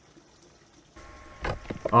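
Near silence with a faint outdoor background. About halfway through, an abrupt switch to a quiet room with a faint steady hum, then a couple of sharp knocks like a microphone being handled, and a man begins speaking at the end.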